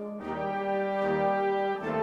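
Brass music playing sustained chords, changing chord about a quarter second in and again near the end.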